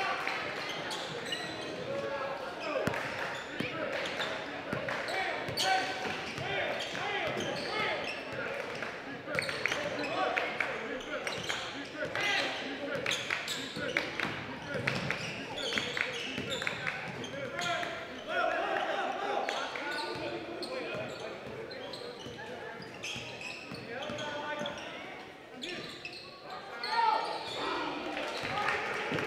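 Live gym sound of a basketball game: a basketball dribbled on a hardwood court in repeated sharp bounces, over indistinct voices of players and spectators.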